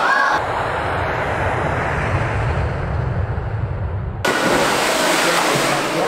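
Water noise from a man jumping into a cave pool: a low rumbling wash of water, then, after an abrupt change about four seconds in, a brighter hiss of churning, splashing water.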